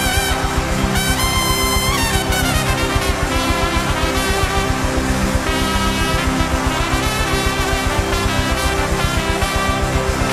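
Trumpet solo, held notes and wavering, ornamented runs, over a live worship band with a steady beat.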